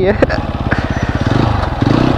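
Single-cylinder motorcycle engine running at low revs with a rapid, even putter.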